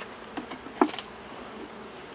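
Honeybees buzzing steadily around an open hive as its frames are handled. There are a couple of light taps of wood, the clearest about a second in.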